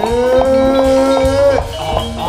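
Jaranan ensemble music: one long held note that slides up at its start, holds steady and cuts off about one and a half seconds in, over the band's steady percussion.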